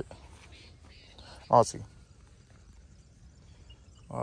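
Low, faint background with one short spoken word about one and a half seconds in; no other distinct sound.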